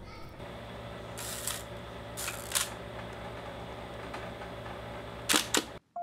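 Hasselblad 500C/M medium-format camera worked by hand: a few short mechanical clicks and clunks, the sharpest and loudest pair near the end, over a steady low hum.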